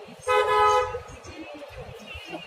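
A vehicle horn honks once, a single steady blast of about half a second.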